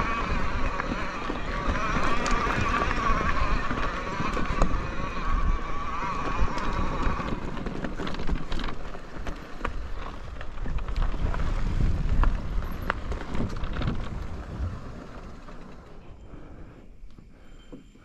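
Electric mountain bike rolling over a dirt forest trail: a steady rumble of tyres and wind with scattered rattles and clicks. For the first seven seconds or so a wavering high whine rides over it, then the sound grows quieter near the end.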